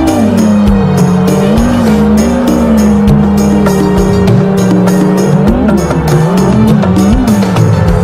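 Background music with a steady drum beat. Under it runs a continuous whine that rises and dips in pitch, like an FPV racing quadcopter's motors changing throttle through a dive.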